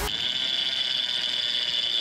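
Conventional fishing reel's bait clicker buzzing as a steady high whirr while line is pulled off the spool: a fish taking the bait.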